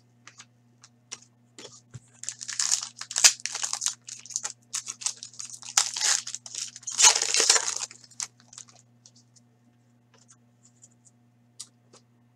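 Foil trading-card pack wrapper being torn open and crinkled by hand, in a run of crackly tearing from about two seconds in, loudest twice, then a few faint ticks as it settles.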